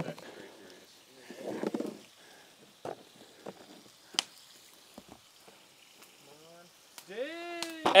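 Snap-on lid of a plastic egg carrier being unclipped and pulled off: a soft scuffle, then a handful of sharp plastic clicks and snaps.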